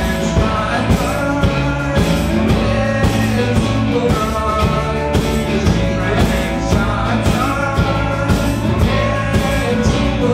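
Live rock band playing: acoustic guitar strummed over a drum kit keeping a steady beat, with a man singing.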